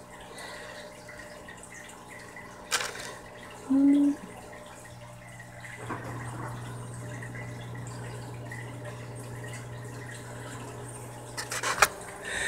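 Steady faint water trickle and low hum of an aquarium filter. A click about three seconds in, a brief hummed note about a second later, and a few clicks near the end.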